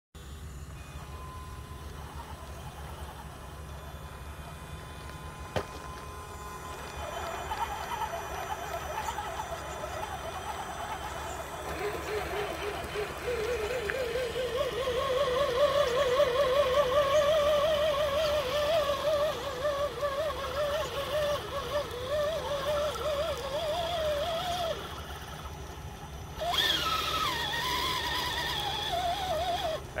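Electric motor and gear whine of radio-controlled scale 4x4 trucks straining against thick mud on a tow line. A wavering whine starts about twelve seconds in, climbs slowly in pitch, and stops a little before the last five seconds. A louder whine then falls in pitch near the end.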